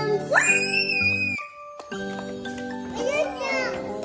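A young child's high-pitched voice rising into a long call shortly after the start, and speaking again around three seconds in, over steady background music.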